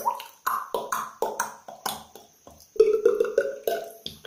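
Beatboxing: a run of sharp vocal percussion hits, a few a second, with a held, hummed bass tone under the hits about three seconds in.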